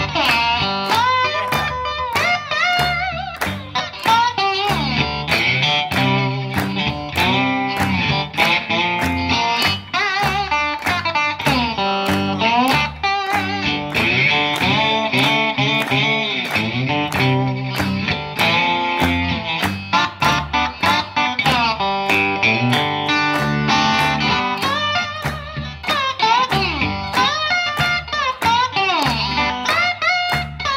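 Instrumental break of a slow electric blues, a Stratocaster-style electric guitar playing lead lines with bent notes. Hand claps keep a steady beat under it.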